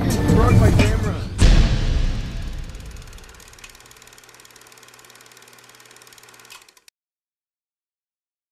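Logo sting: a sudden hit about a second and a half in, fading out over the next second or so into a faint steady hum that cuts off near the end.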